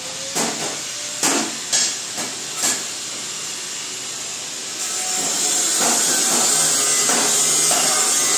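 A steady hiss, louder from about five seconds in, with about five short knocks in the first three seconds.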